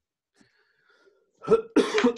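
A man coughing: a short fit of sharp coughs that starts suddenly about one and a half seconds in, after near silence.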